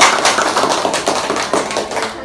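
A small crowd applauding, a dense round of hand clapping that tapers off near the end.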